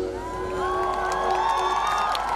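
Concert crowd cheering and screaming at the end of a song, many high voices rising in pitch together, with a low held note from the band carrying on underneath until near the end.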